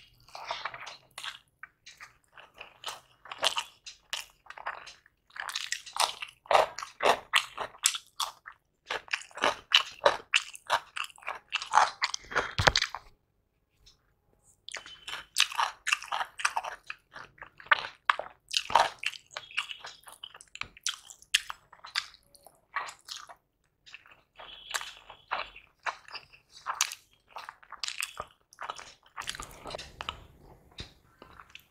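Close-miked mouth sounds of a man eating egg biryani by hand: chewing and lip-smacking in runs of quick clicks, with a pause of about two seconds midway.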